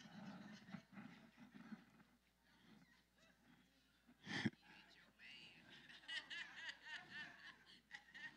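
Faint voices and laughter, low in level, with one short sharp thump about halfway through.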